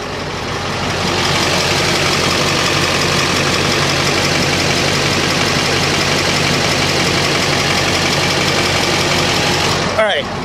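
2008 Chevy Express 3500 ambulance's Duramax 6.6 V8 turbo-diesel idling, heard from beneath the front of the van: a steady low hum under a strong even hiss, getting louder about a second in.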